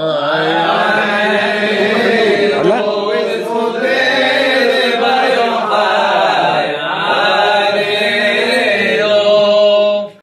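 Men chanting a Hebrew liturgical melody, a continuous sung line with wavering, sliding pitch and no break.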